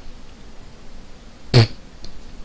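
A man's single short, sudden cough-like sputter from the mouth and throat about one and a half seconds in, set off by a piece of skin caught in his mouth.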